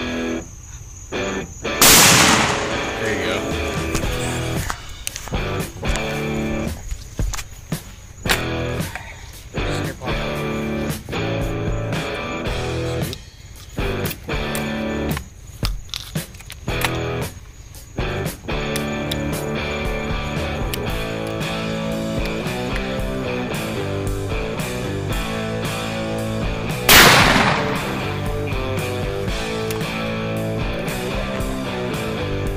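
A 1923 double-barrel shotgun firing its second barrel with one loud bang about two seconds in. Rock music with guitar then plays, and another loud bang comes near the end.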